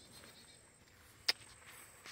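Near silence with faint outdoor background, broken once by a single short, sharp click a little past halfway.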